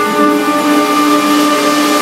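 Live jazz orchestra music: a trumpet holds long notes over sustained chords from the band, with a new chord coming in just after the start.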